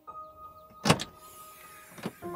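A sharp double clack about a second in, made by the SUV's rear hatch latching or unlatching as it is worked by hand.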